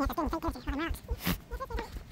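A person's voice making short sounds with a wobbling, bleat-like pitch and no clear words, over a steady run of low thumps from footsteps on the dirt trail. One sharp click or scuff about a second in.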